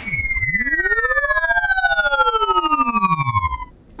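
Synthesized sci-fi shrinking sound effect: a cluster of electronic tones glide in pitch, some falling and some rising, crossing and converging, over a fast pulsing flutter. It stops shortly before the end.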